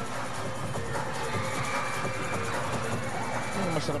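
Basketball arena crowd noise with music playing over it during live play; a high steady tone holds for about two seconds in the middle.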